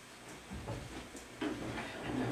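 Quiet meeting room with faint shuffling and small knocks from people moving in their seats, including a man rising from a chair. A low murmured voice starts about two-thirds of the way through.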